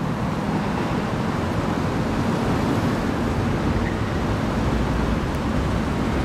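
Steady, even roar of road traffic on a city street, with no single vehicle standing out.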